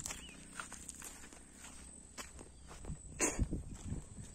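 Footsteps of a person walking on a grassy path, irregular soft steps, with a louder thump a little over three seconds in.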